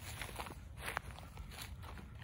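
Footsteps through dry grass and weeds: a few irregular crunching steps, the sharpest about a second in.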